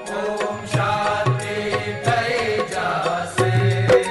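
Devotional aarti song: chanted singing over instrumental accompaniment with a steady percussion beat.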